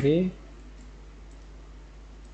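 Faint clicks of computer keyboard keys as a word is typed, over a steady low hum.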